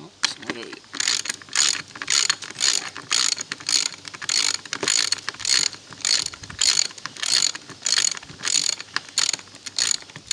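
Ratchet wrench clicking in a steady back-and-forth rhythm, a little under three strokes a second. It is turning a two-inch alignment bolt that draws a T-nut and T-nut sleeve together into the wood.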